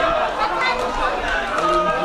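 Crowd chatter: many voices talking and calling out over one another at the same time.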